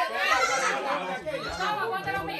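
Several people's voices talking and calling out over one another, one of them drawn-out and wavering.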